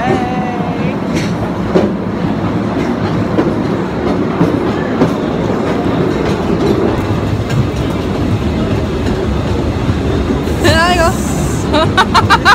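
Postojna Cave's open electric cave train running steadily along its track, a dense continuous rail noise. Voices rise briefly over it near the start and again near the end.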